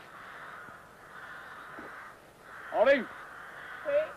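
A loud crow-like caw about three seconds in, rising and falling in pitch, with a short second call just before the end, over a faint steady hiss.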